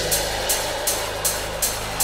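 Electronic techno track at about 159 BPM in a sparse stretch: a steady low bass tone under a short high percussive hit on each beat, about two and a half a second.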